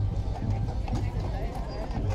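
Hooves of a pair of draught horses clip-clopping on a paved street as they walk past pulling a wagon, with people talking over them.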